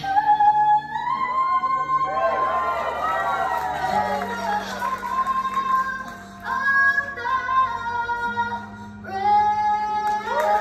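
A young girl singing a national anthem solo through a microphone and hall PA, over a sustained backing track. She sings long held notes with vibrato and short gliding phrases, and the backing chords change about four seconds in and again near the end.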